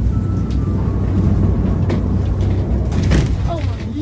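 Steady low rumble inside a ski gondola cabin as it rides up the cable.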